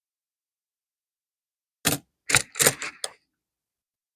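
Handling noise from fingers turning a copper Lincoln cent close to the microphone: four short clicks and rustles in quick succession, starting about two seconds in.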